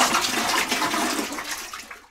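Water rushing and splashing in a toilet bowl, fading away near the end.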